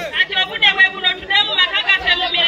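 A woman speaking into a handheld microphone, with crowd chatter behind.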